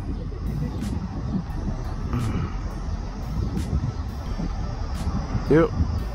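Steady low outdoor rumble with a few faint clicks scattered through it.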